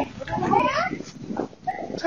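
Dogs barking and yelping in short, pitched calls, with a person's voice mixed in.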